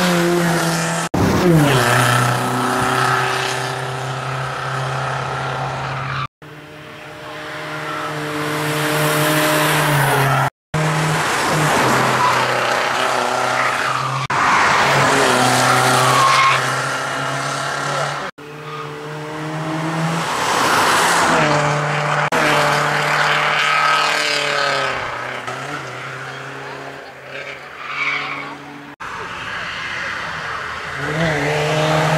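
BMW E46 rally car's engine being driven hard, revs rising and falling through gear changes, with some tyre squeal. It comes in several short passes, each cut off suddenly.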